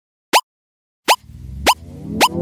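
Short pop sound effects, each a quick upward pitch sweep, three in all, about one every 0.7 s. About halfway through, electronic music with low sustained notes comes in under them.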